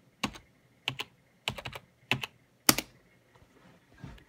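Password typed on a Compaq smart card keyboard: about eight separate, unevenly spaced keystrokes, the last one the loudest, stopping about three seconds in.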